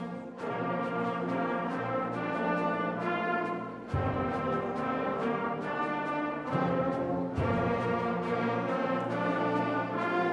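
Middle school concert band playing sustained brass-heavy chords, with new phrases entering on strong low notes about four and seven and a half seconds in.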